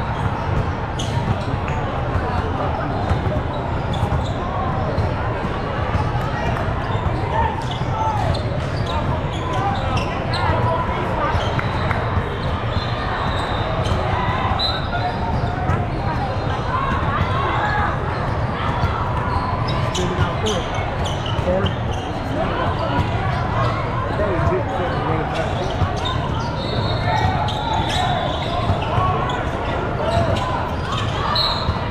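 Voices of players and spectators chattering in a large gym hall, with basketballs bouncing on the court throughout as short sharp knocks.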